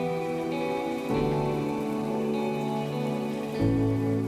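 Slow ambient background music of sustained chords that shift to a new chord about a second in and again near the end, with a soft, even hiss like rain laid over it.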